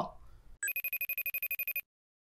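Electronic phone ringtone: a rapid trilling ring that starts about half a second in, lasts just over a second, and cuts off suddenly.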